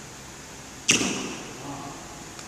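A badminton racket strikes a shuttlecock once, about a second in, with a sharp crack that rings on in the hall's echo.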